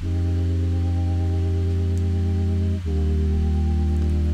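Synthesizer chords playing back: a held chord with a strong low bass note, changing to a new chord just under three seconds in.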